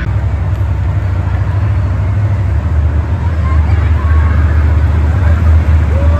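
Monster truck engines running in the arena, a deep, steady rumble that grows slightly louder.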